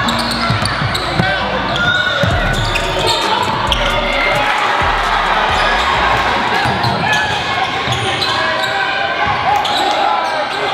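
Basketball being dribbled on a hardwood gym floor during play, amid a steady hubbub of voices from players and the crowd.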